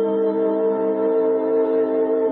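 Armenian folk song sung by a folk ensemble: voices holding long, steady notes in a sustained chord.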